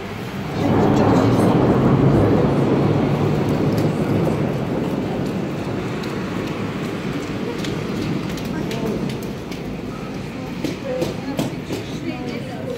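Heavy rain with a loud low rumble of thunder that rises suddenly about half a second in and slowly dies away over several seconds.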